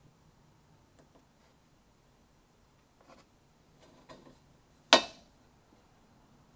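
Quiet handling of a digital angle gauge on an intercooler pipe at a workbench: a few faint ticks, then a single sharp click just before five seconds in.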